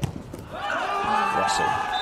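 Arena crowd cheering and shouting at a volleyball match, swelling about half a second in and then holding steady.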